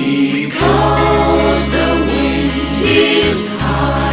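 Music: several voices singing together in close harmony over a held low bass note, which drops out briefly about three seconds in.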